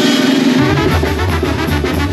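Live brass band music: trombones and trumpets playing over a drum kit, with low bass notes coming in about half a second in and a steady beat.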